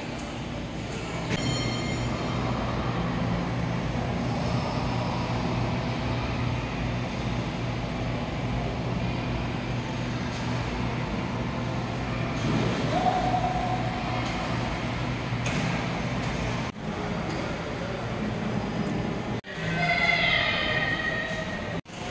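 Indoor shopping-mall ambience: a steady low hum under a wash of distant voices and footsteps echoing in the open concourse. The sound briefly drops out twice near the end.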